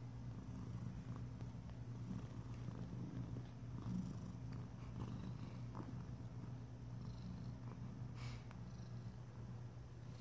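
Domestic cat purring in a steady, continuous low rumble: a mother cat nursing her week-old kittens.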